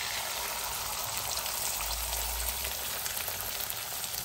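Beaten egg frying in hot oil with chopped onions in an iron kadai, a steady sizzle as it hits the pan.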